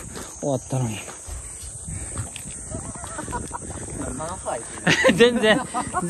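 Short stretches of a man's voice, with no clear words, come about half a second in and again near the end. A steady high-pitched insect drone runs underneath.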